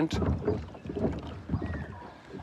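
Quick, irregular footsteps thudding on a floating plastic pontoon dock, several per second, getting fainter toward the end.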